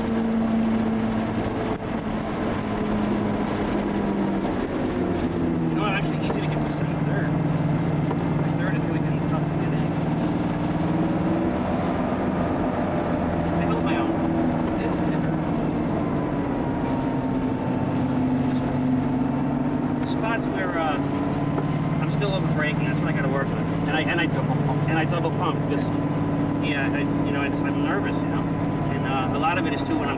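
Porsche 930 Turbo's air-cooled turbocharged flat-six heard from inside the cabin at speed on track, its note repeatedly dropping and climbing again as the driver shifts gears, over steady road and wind noise.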